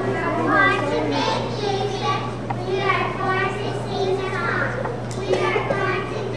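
A group of young children's voices together, over a steady low hum.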